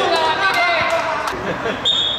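A voice echoing through a large indoor sports hall, followed near the end by a steady high-pitched whistle tone.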